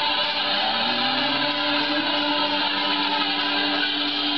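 Heavily distorted electric guitar droning loudly through an amplifier, a harsh, noisy wash with held notes, one lower note sliding upward about half a second in.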